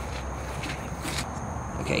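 Quiet outdoor background: a steady hiss and low hum with a thin steady high tone and a few faint, scattered clicks.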